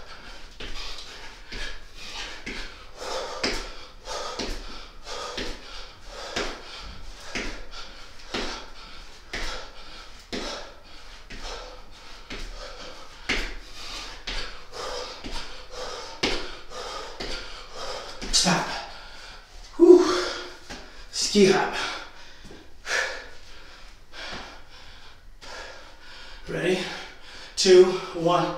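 A man breathing hard through a set of single-leg squats, with a sharp exhale about once a second. Near the end, as the work interval stops, come louder groans and gasps as he catches his breath.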